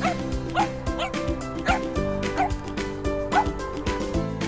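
Shih Tzus yipping in play: about six short, high barks spread over a few seconds, over background music.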